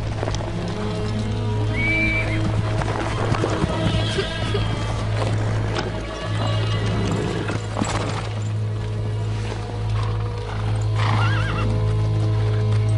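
Orchestral film score with a steady low drone, with horses whinnying and hooves clip-clopping over it.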